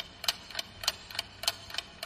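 Clock ticking at an even pace, about three to four ticks a second: a quiz countdown timer running while the question waits for an answer.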